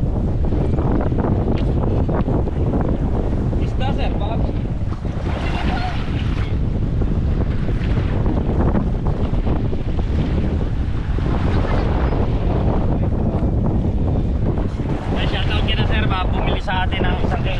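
Wind buffeting the microphone with a steady low rumble, over small waves washing up the shore around a beached outrigger boat.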